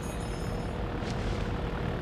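Steady drone of a small propeller aircraft's engine, with a faint steady hum.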